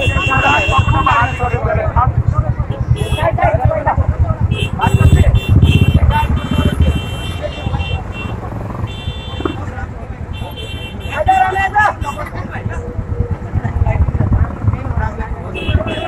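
Many motorcycle engines running at low speed in a slow procession, with horns sounding in several bursts of a second or so each and crowd voices over the top.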